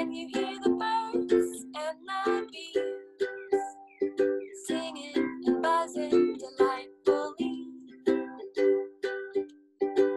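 Ukulele strummed in a steady rhythm, with a woman singing a spring song along with it.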